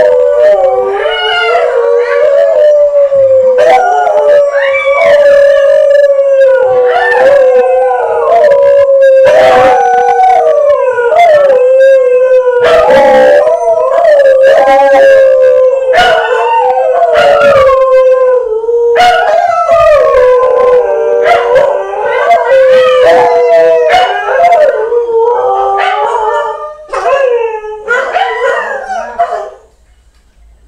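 Dogs howling in long, wavering, overlapping howls that go on almost without a break. They are louder than the nearby speech and stop just before the end.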